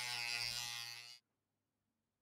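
Handheld rotary tool with a sanding drum running at high speed, sanding away plastic fillets inside a quadcopter's body shell; its steady whine cuts off suddenly just over a second in.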